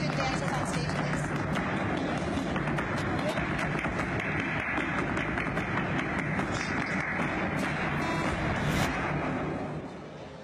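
A dense, steady wash of unintelligible voices with music mixed in, which fades out near the end.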